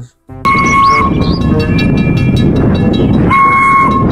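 Steam locomotive whistle blowing twice, a short steady blast near the start and another near the end, over the loud steady noise of the running train, with music mixed in.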